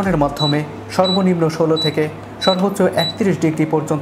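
Galanz split air conditioner's indoor unit giving short, high beeps, about six in four seconds, each one acknowledging a press of the remote's temperature button as the set temperature steps up.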